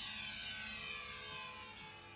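A single whistle-like tone with many overtones gliding slowly and smoothly down in pitch, fading as it falls.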